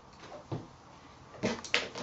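Quiet handling of scissors and fabric: a soft knock about half a second in, then a quick cluster of sharp clicks and knocks near the end as metal scissors are set down on a plastic cutting mat.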